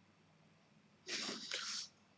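A man's short, audible intake of breath about a second in, lasting under a second.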